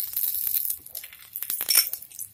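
A steel spoon and a glass bowl clinking together as they are handled and set down, with the loudest ringing clink about three-quarters of the way through. Faint sizzling from the pan is heard early on.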